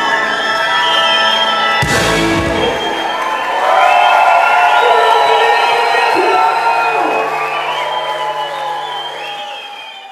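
A large live band plays a held ending with a loud crash about two seconds in, and the audience cheers and whoops over it. The sound fades out near the end.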